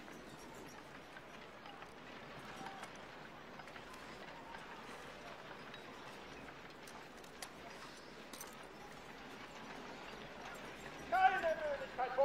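Faint, steady outdoor background with a few small clicks. Near the end a voice calls out briefly, the loudest sound here.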